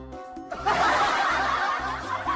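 Young women giggling and laughing together, starting about half a second in, over background music.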